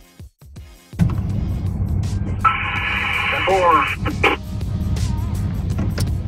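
Two-way radio transmission: a short, tinny voice burst over the radio from about two and a half to four seconds in. Under it, from about a second in, a steady low rumble of a truck running.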